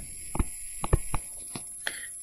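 A pen stylus tapping and clicking on a tablet screen while handwriting, about six light clicks spaced unevenly over two seconds.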